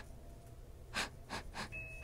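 A woman's short, sharp breaths close to the microphone, three in quick succession starting about a second in.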